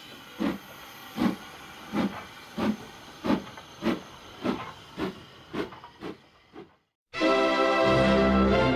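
Steam locomotive chuffing as it pulls away, the beats quickening from under two to about two a second over a faint hiss, then fading out. Music starts near the end.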